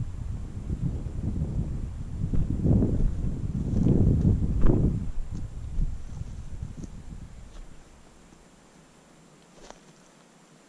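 Footsteps on stony ground with wind buffeting the microphone in an uneven low rumble that dies away about eight seconds in, followed by a few faint clicks.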